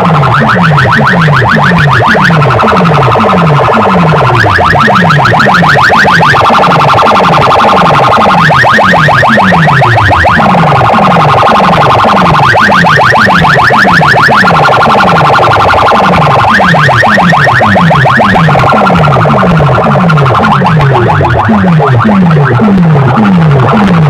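Electronic competition track played very loud through a large DJ sound system of stacked power amplifiers: a falling bass sweep repeats about twice a second, and every four seconds a burst of rapid alarm-like buzzing pulses comes in over it.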